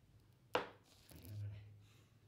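A single sharp knock about half a second in, from hands handling the metal compression drivers, followed by a man's short hummed "um".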